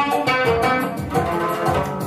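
Oud played live: a melody of plucked notes over a steady low beat.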